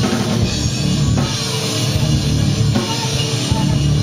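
Live rock band playing loud and without a break: drum kit, electric guitars and bass, with no vocals.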